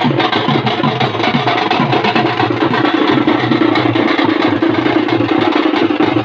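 A troupe of dollu drums, large barrel drums beaten with sticks, playing a dense, fast, continuous rhythm, with a steady low drone beneath them that grows louder about halfway through.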